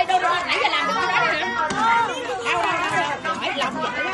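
Several children chattering at once, their voices overlapping so no single speaker stands out.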